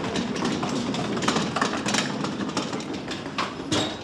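Wire-frame laundry cart rolling along a hard floor, rattling and clattering continuously, with a louder knock near the end.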